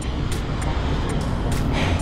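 Steady outdoor background noise with a strong low rumble and a couple of faint clicks.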